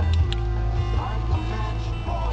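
Background music with a steady low bass line and held tones, with a couple of short clicks about a quarter of a second in.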